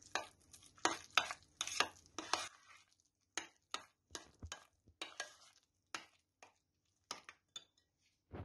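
Metal spoon stirring corn kernels into a thick yogurt sauce in a glass bowl: wet scrapes and light clinks of the spoon against the glass. The strokes come close together for the first two and a half seconds, then thin out into separate light taps.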